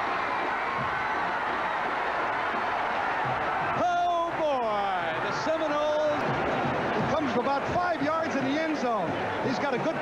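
Stadium crowd roaring during a long touchdown run on a television broadcast. About four seconds in, a man's voice shouts over the noise, followed by more excited voices.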